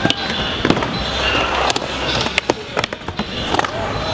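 Skateboard wheels rolling on concrete, broken by several sharp clacks of the board popping, flipping and landing.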